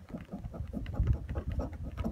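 A coin scraping the coating off a scratch-off lottery ticket in quick short strokes, over a low rumble.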